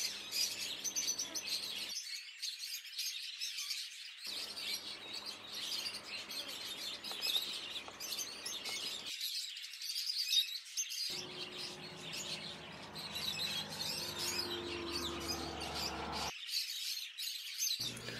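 Birds chirping: a quiet, steady chorus of many small, high chirps.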